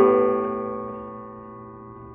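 A chord played on a digital piano, struck once at the start and left to ring, dying away slowly.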